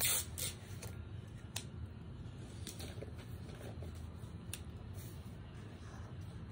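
Handling of felt-tip markers and paper: a short rustle at the start, then a few small clicks, typical of a marker being capped and another uncapped, over a quiet background.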